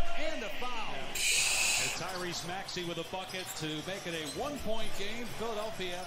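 Televised NBA game audio: a commentator talking over arena crowd noise, with a burst of hiss lasting about a second, about a second in.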